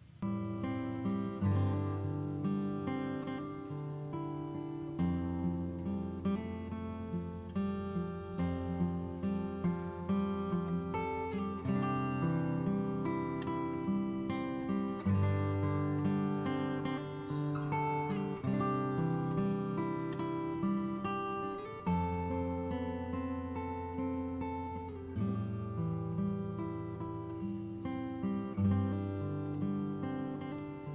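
Background music of strummed acoustic guitar chords, starting suddenly.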